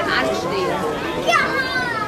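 Children's high voices calling and talking over the general chatter of a crowd.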